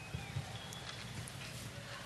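Low hum of a large venue with a few soft low knocks, the loudest one near the start.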